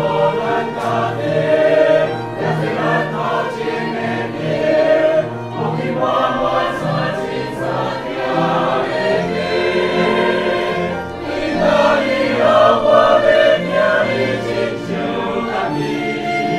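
Mixed church choir singing a hymn with violin accompaniment.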